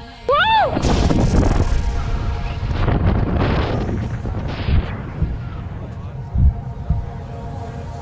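Wind buffeting the camera microphone during a fast zipline ride, a loud rushing that eases off over the first five seconds. Just after the start the rider gives a short high whoop that rises and falls. Two sharp thumps follow later.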